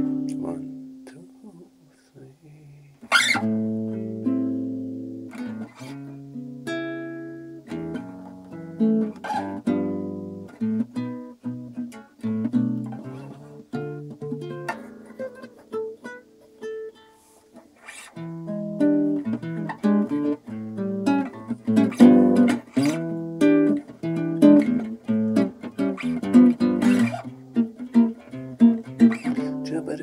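Nylon-string classical guitar played fingerstyle in a blues, single picked notes and chords ringing. There is a brief lull then a sharp loud strike about three seconds in, quieter picking through the middle, and fuller, busier playing from about eighteen seconds on.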